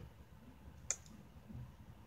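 Quiet room tone with one short, sharp click a little under a second in.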